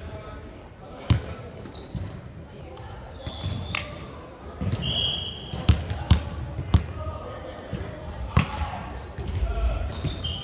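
Volleyball being struck during a rally: several sharp smacks of hands and forearms on the ball, echoing in a large sports hall, with players' voices in the background.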